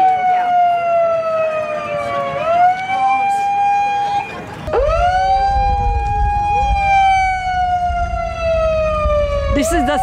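A siren wailing, its pitch sinking slowly and then sweeping quickly back up, several times over. A low rumble joins about halfway through.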